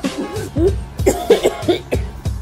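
A woman coughing and gagging at the smell of fart spray, with a man laughing, over background music.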